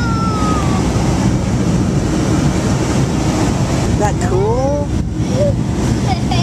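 Airliner cabin noise just after takeoff: a steady, loud, low rumble from the jet engines and airflow as the plane climbs. A child's voice sounds briefly at the start and again about four seconds in.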